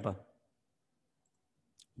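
Near silence, then a single short computer-mouse click near the end.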